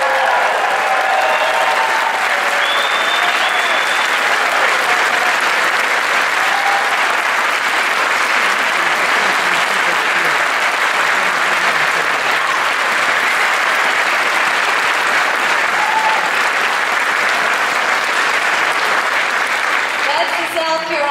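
Large indoor audience applauding and cheering at a steady, loud level, with a few voices calling out in the first few seconds.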